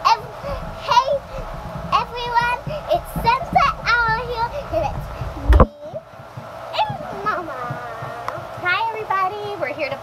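A young girl's high voice chattering, with a low rumble of the phone being handled under it for the first half, which cuts off suddenly about halfway through.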